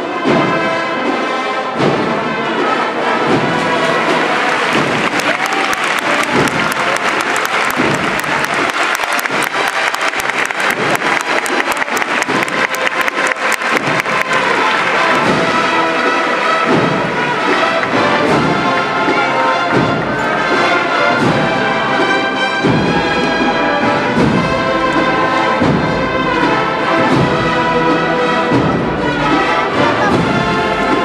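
Spanish Holy Week brass-and-percussion band (agrupación musical) playing a procession march, trumpets and trombones carrying the tune. A crowd applauds over the first half, and drums keep a steady beat through the second half.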